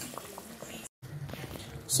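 Faint bubbling of a pot simmering on the stove, with small ticks and pops, broken by a moment of total silence about a second in.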